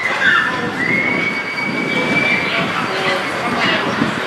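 A long, steady high-pitched squealing tone, starting about a second in and holding for nearly two seconds, over the general noise of the football ground.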